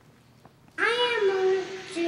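A young boy's voice starts a little under a second in after near quiet, high-pitched and drawn-out in a sing-song way as he reads a line aloud.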